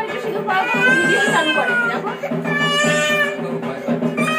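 High-pitched, drawn-out vocal wails, each about a second long and gently rising and falling in pitch, over voices talking.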